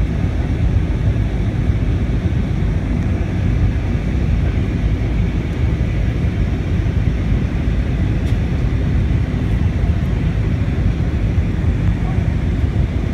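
Steady cabin noise inside an Airbus A319 airliner on approach: the engines and the rush of air over the fuselage, a loud, even, deep roar that holds level throughout.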